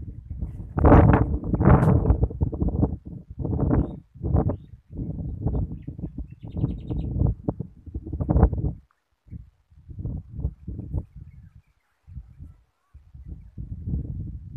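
Wind buffeting the microphone in uneven gusts, a low rumble that swells and dies away several times. A short, faint high bird chirp about halfway through.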